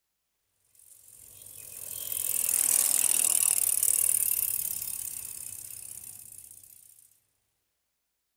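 A recorded sound effect from a listening exercise on everyday activities: a rapid mechanical clicking that fades in, swells to its loudest in the middle and fades out after about six seconds.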